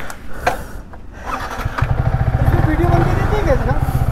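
Yamaha R15 V3 motorcycle's single-cylinder engine starting up about two seconds in, then idling steadily with an even low beat.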